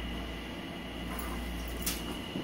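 Steady room hum with one sharp click near the end, from a puppy playing with an ice cube on a tiled floor.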